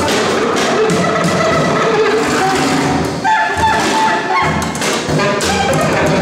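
Free jazz trio playing: saxophone lines over double bass and drum kit, with frequent sharp drum hits. About halfway through the saxophone holds a higher note.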